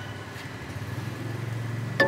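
A low steady engine-like drone, growing slightly louder and cutting off suddenly at the end.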